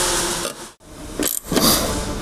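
Flexible corrugated plastic hose scraping and rubbing as it is worked onto a dust collector's outlet fitting. The noise cuts out abruptly just before a second in, then comes back as crinkling, rustling handling of the hose.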